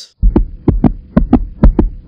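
Heartbeat sound effect: fast, loud double thumps (lub-dub), about two beats a second, standing for a racing heart.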